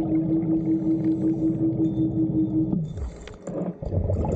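Underwater scooter (diver propulsion vehicle) motor running with a steady hum, heard underwater; the hum cuts off suddenly a little under three seconds in, leaving a quieter stretch.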